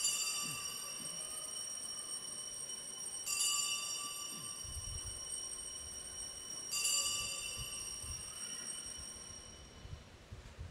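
Altar bells rung three times during the elevation of the consecrated chalice, about three and a half seconds apart. Each ring is a cluster of high, bright tones that rings on and fades slowly.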